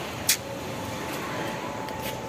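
Steady background noise, like an outdoor town hum, with one sharp click about a third of a second in.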